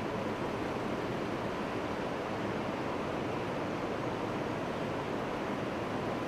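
Steady rushing noise from an open microphone feed, with no voices or music.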